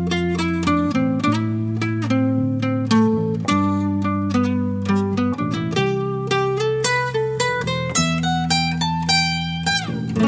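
Steel-string acoustic guitar picking a melodic instrumental solo, note after note, over an electric bass guitar holding low sustained notes. Near the end a note slides down in pitch.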